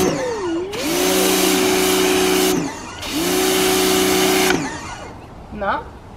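Electric pressure washer spraying in two bursts of about two seconds each. The motor hums up to speed as the trigger is squeezed and stops when it is let go, under the hiss of the water jet.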